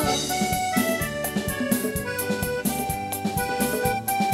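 Live band playing an instrumental passage: a keyboard plays a melody of held, stepping notes in a reedy, accordion-like tone over drums and bass.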